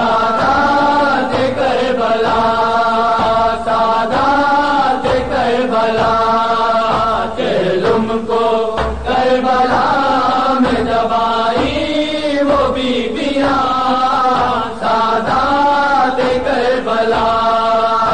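A noha, a mourning lament, chanted through a horn loudspeaker in long, held, wavering phrases with short breaks between them, over a faint regular beat.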